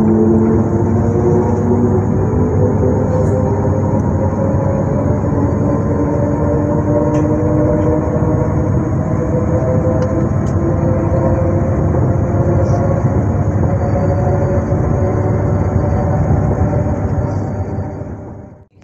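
Z 20500-series Z2N electric multiple unit (motor car Z 20834) running, its traction motors and chopper equipment giving several whining tones over a rumble that climb slowly in pitch as the train gathers speed, then level off. The sound drops away near the end.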